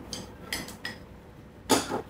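Chopsticks clicking lightly against a ceramic noodle bowl while picking up noodles: a few faint clicks in the first second, then one louder, brief noise near the end.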